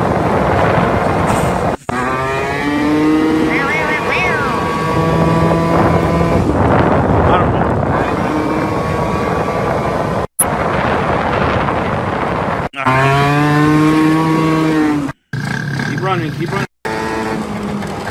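Moped's small engine running steadily under way, its note shifting a little with the throttle, over wind rushing across a phone microphone. The sound cuts out briefly several times.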